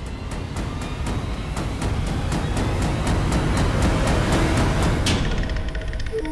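Dramatic background score: a fast, even drumbeat of about five strikes a second over a deep rumble, swelling in loudness. A stronger hit comes about five seconds in, and the music then eases into a held, ringing tone.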